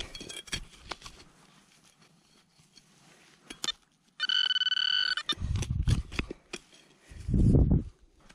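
Digging into stubble and soil with a hand trowel, a few scrapes and clicks, then a metal detector's steady high target beep lasting about a second, a little past the middle. Low rumbling handling noise follows near the end.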